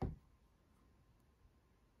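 A single short, low thump right at the start, dying away within a fraction of a second.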